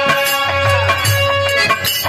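Instrumental accompaniment of a Bhojpuri birha folk performance, with no singing: long held melody notes that stop a little past halfway, over regular drum strikes.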